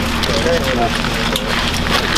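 Indistinct talk among several soldiers, with scattered clicks and rustles of gear and weapons being handled, over a steady low hum.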